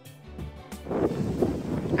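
Soft instrumental background music, then about a second in a louder, rushing outdoor noise takes over, like wind on a handheld microphone.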